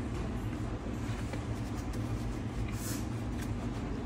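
Steady low background hum of a room, with a few faint clicks and soft rustles.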